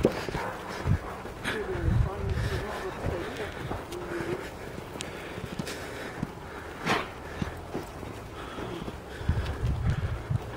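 Footsteps and the dog's movement in snow while walking on a leash, with scattered knocks and handling noise, and faint voices in the background.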